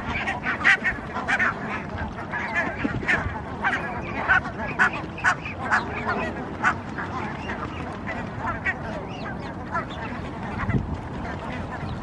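House sparrows chirping, short calls repeated a few times a second that thin out after about seven seconds.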